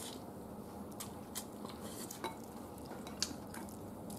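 Light clicks of wooden chopsticks and a fork against bowls and dishes while noodles are picked up, a few separate clicks about a second apart over faint room noise.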